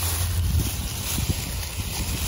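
Steady wind noise on the microphone: a low rumble under a soft hiss.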